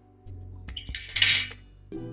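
Brass trombone parts clinking and scraping as the bell section is worked loose from the slide section. A loud metallic rasp comes about a second in.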